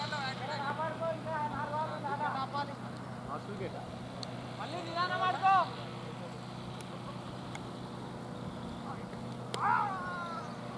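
Cricket players calling out on the field, in several short bursts of raised voices: a run of calls early on, a louder shout about halfway, and another near the end. A steady low hum runs underneath.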